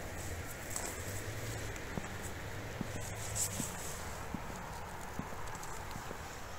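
Footsteps walking at an even pace on a paved path, soft thuds a little more than one a second, over a steady background hiss.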